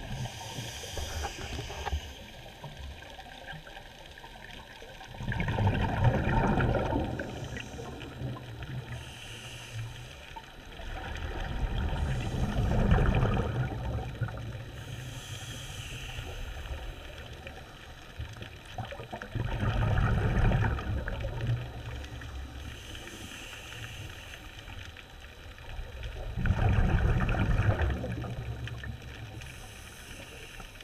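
Scuba diver breathing through a regulator underwater: a soft hiss on each inhale, then a loud burble of exhaled bubbles, four breaths about seven seconds apart.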